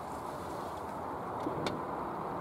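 Steady hiss of road traffic passing, rising slightly towards the end, with one faint click near the end.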